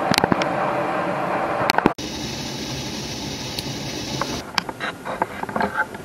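Hot maple syrup pouring from a steel pipe spout off a pot's ball valve into a coffee-filter-lined strainer: a steady hiss of running liquid with scattered clicks and drips, broken once about two seconds in.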